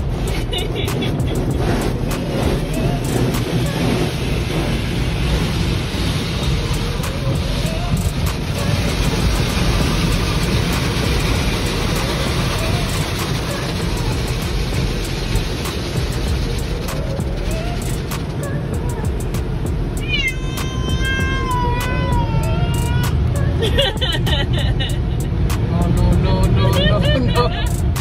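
Automatic car wash heard from inside the car: a dense, steady wash of water spray and brushes beating on the body and windshield. In the second half, pitched voice-like sounds glide down in steps over the noise.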